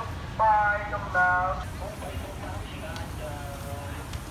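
Street ambience: a person's voice speaking loudly in two short phrases near the start, then fainter voices, over a steady low rumble of traffic.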